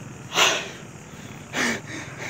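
Two short, breathy puffs close to the microphone, about a second apart, the first the louder, over a steady low rumble.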